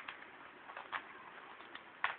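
A Rubik's cube being turned by hand: quick plastic clicks and rattles as its layers are twisted, a few separate turns.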